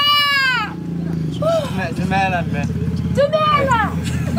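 A person's voice gives a long, loud cry that falls in pitch at the start, followed by shorter vocal calls, over a steady low background noise.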